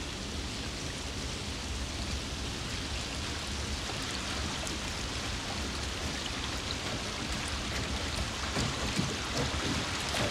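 River rapids rushing: a steady, even wash of water noise that grows a little louder near the end.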